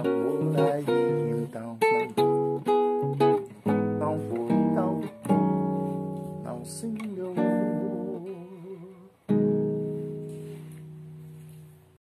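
Acoustic guitar played with the fingers, closing a samba: quick syncopated plucked chords for the first few seconds, then slower chords left to ring, and a final chord about nine seconds in that rings out and slowly fades.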